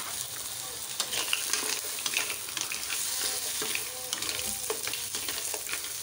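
Sizzling in a frying pan as boiled green mussels, garlic, onion and seafood balls fry in oil and are stirred with a spatula, with steady hiss and frequent small crackles and scrapes.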